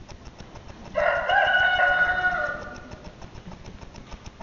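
A rooster crowing once: a single call of about a second and a half, starting sharply and tailing off.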